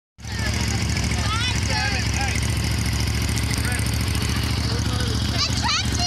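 A parade vehicle's engine running close by, a steady low drone, with people's voices calling out over it.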